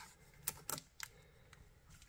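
A few faint, sharp clicks of hard plastic card holders knocking against each other and the shelf as a cased card is slid into place, clustered in the first second.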